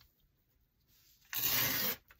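Paper rubbing on paper as sheets are slid by hand: mostly quiet, then one short rub of about half a second near the end.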